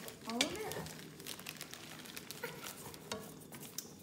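Plastic spoon stirring marshmallows in a pot of warming bacon grease and cooking oil on a burner, with small clicks of the spoon against the pot over a faint sizzle.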